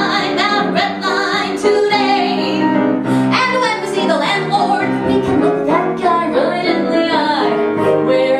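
A woman singing into a microphone with piano accompaniment, in a live cabaret performance.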